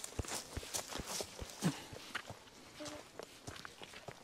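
Footsteps crunching on a dry forest path strewn with pine needles and small stones, unhurried, about two steps a second, a little softer in the second half.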